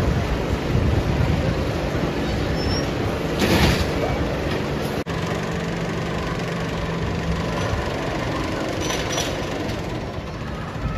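Spinning steel roller coaster running: a steady rumble of the cars on the steel track, with a short hiss about three and a half seconds in and a steady low hum for a couple of seconds after five seconds.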